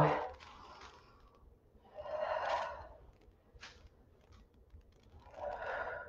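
A woman breathing out hard twice, about three seconds apart, with the exertion of dumbbell calf raises.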